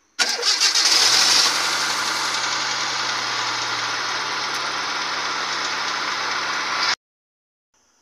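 Car engine being started: the starter cranks for about a second, the engine catches and settles into a steady idle, then the sound cuts off abruptly near the end. The battery holds up under cranking, its voltage staying above 9 volts, the sign of a healthy battery.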